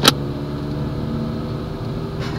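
A Mazda car's engine and road noise heard from inside the moving cabin, a steady drone. A single sharp click just after the start is the loudest moment.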